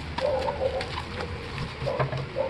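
Plastic bubble-wrap packaging crinkling and crackling as it is handled, with short, low-pitched animal calls in the background.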